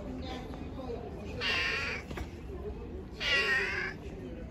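A street cat meowing twice, two loud high meows about a second and a half apart, the second slightly longer.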